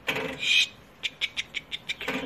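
A marten trapped in a wire cage trap gives a short harsh cry, followed by a quick run of about seven short clicking chatters.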